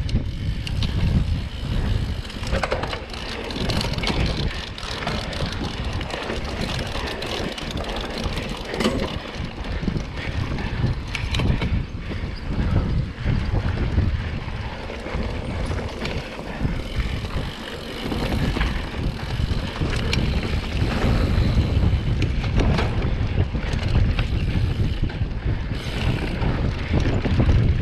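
Mountain bike ridden hard over a dirt trail: wind buffeting the microphone, with tyre noise and frequent short clicks and rattles from the bike. The wind rumble grows louder in the last few seconds as the bike comes out onto an open dirt road.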